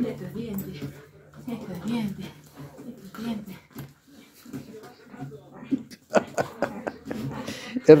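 Small dog growling in play while it mouths a man's hand: a low continuous growl, broken off briefly about halfway through, with short pitched vocal bursts over it. It is play-fighting, mouthing without biting down.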